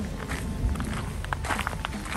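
Footsteps on a gravel path, irregular crunching steps of people walking, over a low rumble of wind or handling noise.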